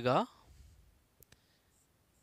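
Marker pen writing on a whiteboard: faint strokes, then two quick light clicks about a second in. A man's word trails off at the very start.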